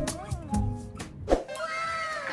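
Light background music with plucked notes that fades about a second in, then a woman's voice holding one long, slightly rising sound of enjoyment near the end.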